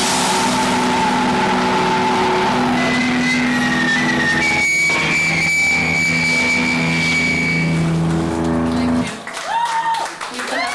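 Loud wall of distorted electric guitar and amplifier feedback from a heavy band on stage, a dense noisy drone with several long held tones that shift in pitch now and then. It cuts off abruptly about nine seconds in as the last song ends.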